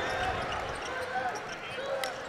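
A basketball being dribbled on a hardwood court, under the murmur of an arena crowd.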